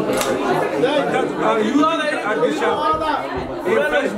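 Only speech: men's voices talking, at times over one another, in a room.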